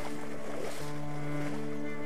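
Background music of sustained low string-like notes that step to a new pitch about every second, with a short rush of noise about half a second in.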